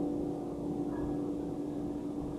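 A grand piano note held and slowly fading as a chord rings out, over a steady low background rumble.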